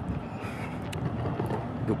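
City street background noise: a steady low rumble of traffic, with a short sharp click a little under a second in.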